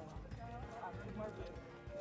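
Footfalls of a group of joggers running past on pavement, an irregular patter of steps, with faint voices in the background.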